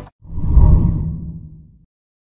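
A low whoosh transition sound effect that swells quickly and fades away over about a second and a half.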